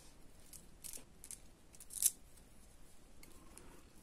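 Faint, scattered clicks and light scrapes of plastic icosahedron beads knocking together as a needle and thread are worked through them, the loudest about two seconds in.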